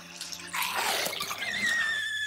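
A woman laughing hard: breathy, wheezing laughter starting about half a second in, which turns into a long high-pitched squeal in the second half.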